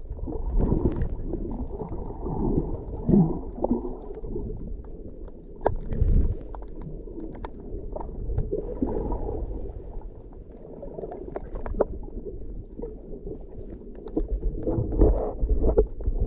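Muffled underwater sound picked up by a camera in a waterproof housing: low rumbling and sloshing of water against the submerged camera, with scattered small clicks and knocks. Stronger low surges come about six seconds in and again near the end.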